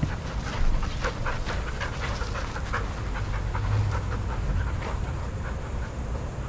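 A dog panting fast and close by, a quick, steady run of short breaths, over a low steady rumble.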